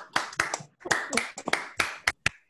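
Hand clapping, about five sharp claps a second, with near silence between each clap.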